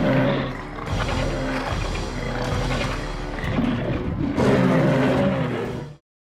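Loud theatrical dinosaur roars played over a show's sound system with music underneath: one roar swelling at the start and another about four and a half seconds in. The sound cuts off suddenly at the end.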